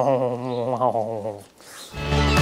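A man's voice holding a long wordless vocal sound whose pitch wavers up and down, which stops about one and a half seconds in.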